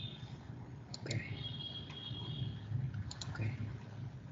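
Computer mouse clicking: a quick pair of clicks about a second in and another pair about three seconds in.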